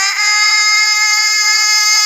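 A Quran reciter's voice holding one long, steady high note on a drawn-out vowel, the prolonged syllable of melodic Quran recitation. The pitch wavers slightly at the start, then stays level.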